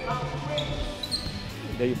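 Basketballs bouncing on a gym court, a few scattered knocks, under voices in the hall.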